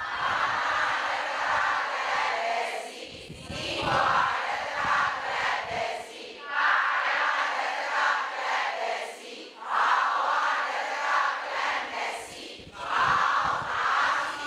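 Many voices sounding together, in repeated waves of about three seconds with short breaks between.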